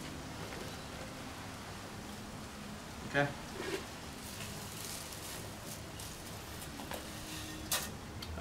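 Granules of pre-emergent herbicide poured from a scoop into a plastic hand-held spreader's hopper, a faint rain-like patter. A brief voice sound comes about three seconds in, and a sharp click just before the end.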